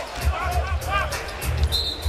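Basketball bouncing on a hardwood court under arena crowd noise and music, with a referee's whistle blowing once near the end, a single steady high note of about half a second, calling a holding foul.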